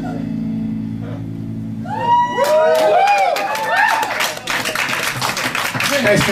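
A live band's last sustained chord fading out, then from about two seconds in an audience breaks into whooping, cheering and applause.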